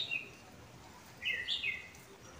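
A small bird chirping: one short high note at the start, then a quick run of three or four chirps a little over a second in.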